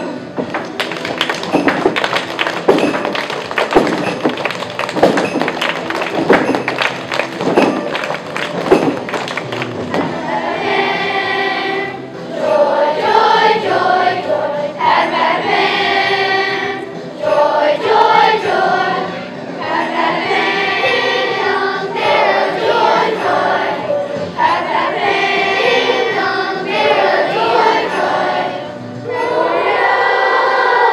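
A children's choir sings a Christmas song over accompanying music, in phrases of one to two seconds. For about the first ten seconds, a fast run of sharp percussive hits sounds under and before the singing.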